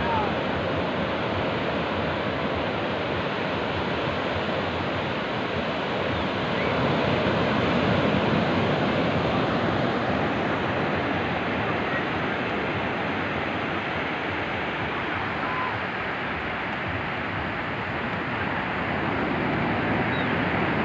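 Steady wash of ocean surf breaking on a beach, swelling slightly about eight seconds in.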